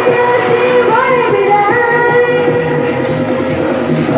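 A Mandarin pop song played loud through a stage sound system, a woman singing the melody into a microphone over the backing track, with long held notes.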